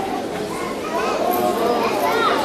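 Many children's voices chattering and calling out at once, getting louder about a second in.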